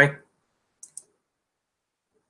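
Two quick computer mouse clicks, close together, about a second in.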